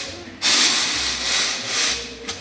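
Home-built 3D-printed circular knitting machine being turned round, its plastic cylinder and steel needles making a scraping, rubbing noise. It swells up about half a second in and rises and falls twice more.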